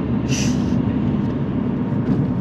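Car engine and road noise heard inside the cabin of a moving car: a steady low drone, with a brief hiss about half a second in.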